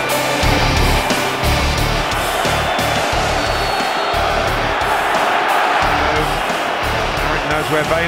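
Rock backing music with a heavy, pulsing bass beat.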